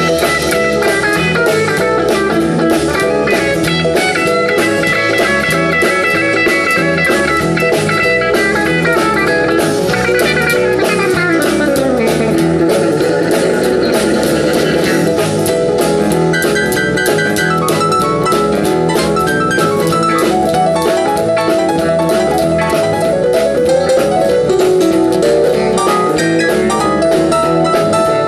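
A live country-folk band playing an instrumental passage on electric and acoustic guitars, bass and drum kit, through a PA. About halfway through, a note slides down in pitch.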